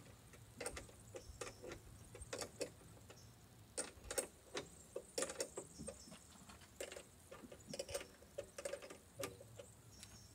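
Faint, irregular clicking and light knocks of a boot-lid luggage rack's metal and plastic fittings being handled and adjusted as it is fitted, busiest in the second half.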